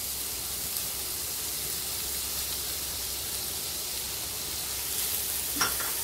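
Chopped onion sizzling steadily in melted butter in a nonstick pan, stirred with a silicone spatula. There is a brief knock near the end.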